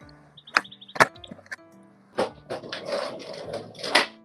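Skateboard popped for a nollie heelflip on concrete: a sharp snap about half a second in and a louder clack of the board about a second in, then the rattle of wheels rolling, with another sharp clack near the end. Background music runs underneath.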